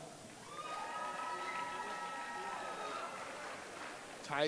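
A voice holding one long drawn-out call that glides up at the start and is held on one pitch for about two and a half seconds, over the murmur of a crowd in a gym.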